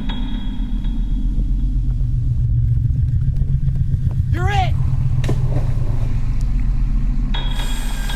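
A low, steady rumble, with a person's short wavering cry that rises and falls in pitch about four and a half seconds in.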